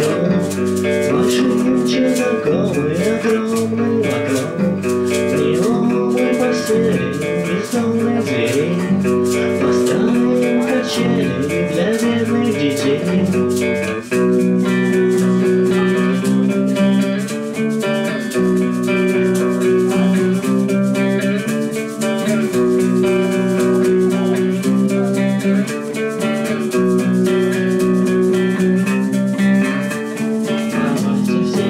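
Instrumental passage of live acoustic music: guitar chords played with a shaker rattling a steady, quick beat. The low bass notes drop away about halfway through.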